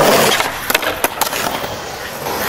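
Skateboard wheels rolling on the concrete of a bowl, loudest at the start, with a few sharp clacks around the middle.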